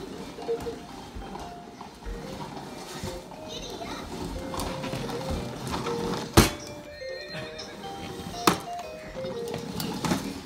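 Electronic jingle from a baby's push-along toy horse walker, a melody of simple beeping notes mixed with horse neigh and clip-clop sound effects. Two sharp knocks stand out, about six and eight and a half seconds in.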